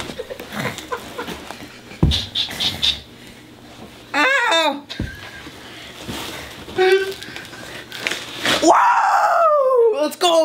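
A person struggling free of a duct-taped office chair on a carpeted floor: scuffling with sharp knocks of the chair about two and five seconds in. Wordless vocal sounds come over it: a short wavering cry about four seconds in and a long falling yell near the end.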